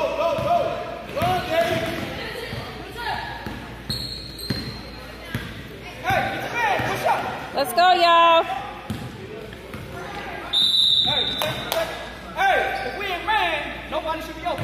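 Basketball dribbling and bouncing on a gym court, with shouting voices of players and spectators echoing in a large hall. Two short, high whistle-like tones sound, about four seconds in and again near eleven seconds. The later one fits a referee's whistle stopping play for a free throw.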